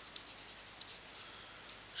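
Faint, scattered light ticks and scratching from a computer pointing device being worked on the desk, over a steady low hiss.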